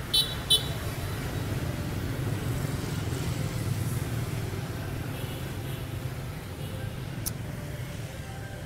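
Street traffic noise, a steady low rumble of road vehicles, with two short high beeps just after the start and a single click near the end.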